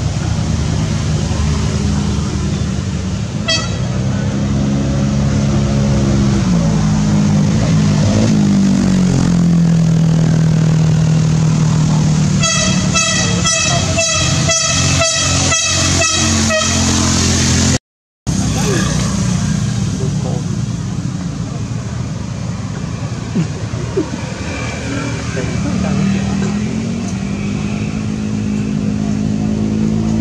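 A motor vehicle engine running, its pitch slowly rising and falling, with a rapid series of horn toots partway through. The sound cuts out completely for a moment a little past the middle.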